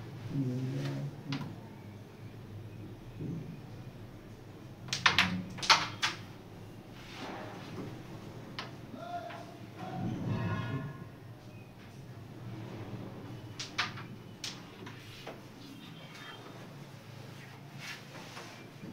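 Sharp clicks of carrom pieces on the board: a quick run of four about five seconds in, the loudest sounds here, and two more a little past halfway. Low voices murmur underneath.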